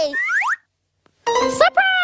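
Cartoon-style sound effects: two short rising whistle-like glides, a brief silence, then two falling boing-like tones.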